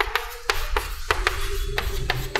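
Chalk on a blackboard as a word is written: a quick run of sharp taps and short scrapes, about four strokes a second.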